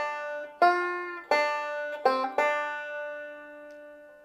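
Five-string banjo picked: a short phrase of about six notes in the first two and a half seconds, the last note left ringing and fading away.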